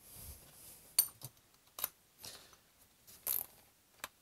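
A few short, sharp metallic clicks and clinks with light handling noise as a spade bit is refitted in a Makita cordless drill's keyless chuck.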